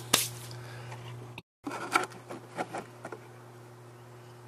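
A few light clicks and taps of hands handling things over a steady low electrical hum, with the sound cutting out completely for a moment about a second and a half in.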